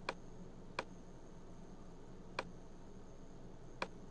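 Computer mouse button clicking four times at uneven intervals, each a short sharp click, over a faint steady hum of room tone.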